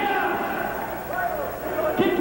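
A man speaking through a handheld microphone over an arena's PA.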